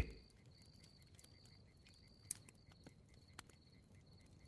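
Faint campfire background: crickets chirping in a steady, pulsing high trill, with a few sharp crackles from the fire in the second half.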